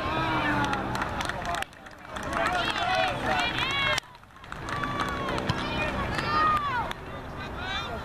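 Several high-pitched voices shouting and calling out across a youth soccer field, overlapping one another. The sound drops out abruptly twice, about one and a half and four seconds in.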